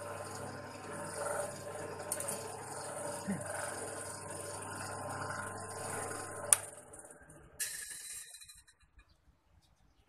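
Electric motor of a homemade drum sander running steadily, driving the sanding roller through a newly fitted A-40 V-belt on a test run. A sharp click comes about six and a half seconds in, and the hum then stops and dies away, with a brief scraping hiss shortly after.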